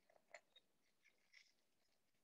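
Near silence, with a few faint clicks of felt-tip markers being handled, about a second apart.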